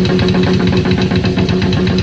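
Rock drum kit played in a fast, even run of strokes, the kick drum and drums hit in rapid succession, over a held low note from the band.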